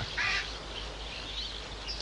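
Animal calls in a jungle soundtrack: a short raspy call just after the start, then faint high bird chirps.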